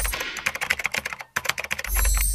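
Keyboard-typing sound effect: a rapid run of sharp key clicks while the end-card text is typed out. A louder whoosh swells in near the end.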